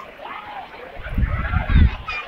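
Chatter of a beach crowd, with low gusts of wind rumbling on the microphone that are loudest near the end.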